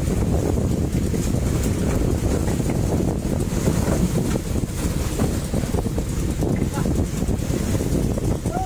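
Steady wind rumbling on the microphone aboard a small fishing boat at sea, with the boat's own low running noise and water underneath.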